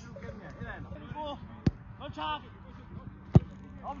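Two sharp thuds of a football being kicked, one about a second and a half in and a louder one a little past three seconds, with players' voices calling across the pitch.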